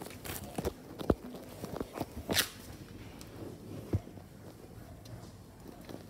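A pet rabbit's paws giving a few scattered soft taps and scuffs on a hard floor as it moves about, with one brief rustling hiss about two seconds in.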